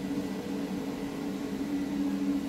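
Vacuum OCA lamination machine running with a steady low hum, a few held tones over a faint hiss.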